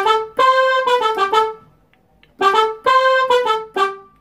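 Electronic keyboard playing a short melodic phrase in a trumpet-like brass voice, in C major, twice over with a brief pause between.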